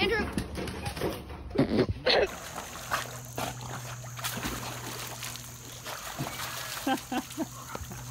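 Loud shouts and a few sharp knocks for about two seconds. Then water splashing and sloshing in a swimming pool as dogs paddle and climb out, with brief voices near the end.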